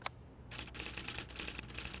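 Faint, rapid typing clicks, a typewriter-style sound effect for on-screen text being typed out letter by letter, starting about half a second in after a single click at the start.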